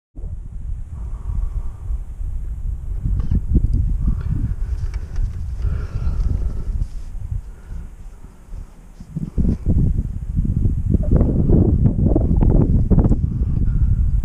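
Wind buffeting the camera's microphone in gusts: a low rumble that rises and falls, easing briefly about eight seconds in.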